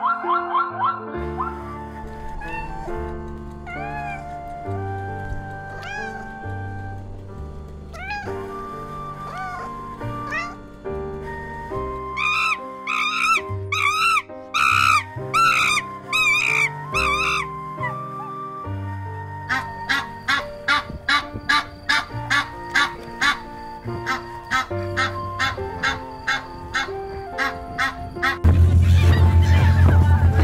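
Background music of sustained notes with gliding high tones. A run of wavering, call-like phrases comes through the middle. A steady beat of about two strokes a second fills the last third.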